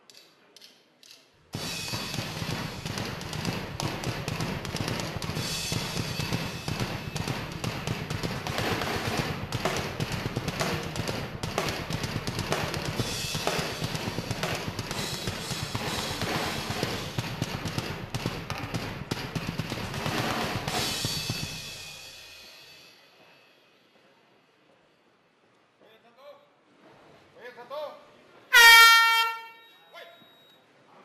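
Loud music with a driving drum beat starts abruptly and plays for about twenty seconds before fading out. Near the end, a short, loud horn blast sounds, the signal to start round 1.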